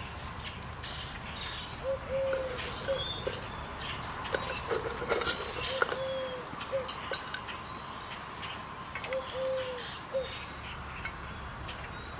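A bird cooing in three short phrases of a few low notes each, over steady wind noise on the microphone and scattered faint clicks.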